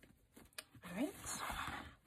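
Wired fabric ribbon rustling as it is gathered and pinched into a bow loop, with a short rising hum from a voice about a second in.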